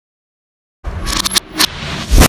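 Logo sting sound effect: silence, then, a little under a second in, a loud burst of noise with sharp cracks through it.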